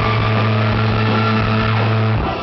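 Live rock band holding one loud, steady low chord on amplified electric guitars and bass.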